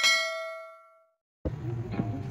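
A bright bell-like ding, the notification-bell sound effect of a subscribe animation, struck once and ringing out, fading over about a second. Guitar music starts about one and a half seconds in.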